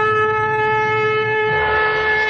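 Outro music: a sustained chord held at a steady pitch, with the low bass note changing about three-quarters of the way through.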